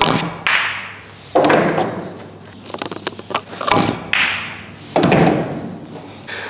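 Pool balls being struck in a run of soft stop shots: sharp clicks of cue tip on cue ball and cue ball on object ball, each followed by a short clatter of the object ball dropping into the corner pocket, several times over.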